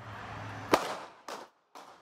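Gunshots on a city street at night: one loud, sharp shot about three-quarters of a second in, then two fainter cracks, over a low traffic hum. They are easily mistaken for fireworks.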